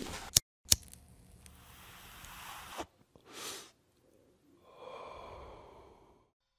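Mostly quiet, with two sharp clicks in the first second, a short soft whoosh around the middle, and a faint tone near the end.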